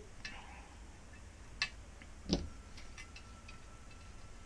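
A few faint, scattered clicks and ticks from hands handling a thin LED strip and its tape backing. The two loudest come about a second and a half and two and a half seconds in.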